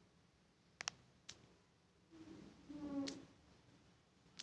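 Two faint taps as letters are typed on a phone's on-screen keyboard, then a faint drawn-out pitched sound about a second long.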